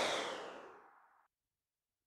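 A whoosh transition sound effect, a swell of airy noise that fades away over about a second.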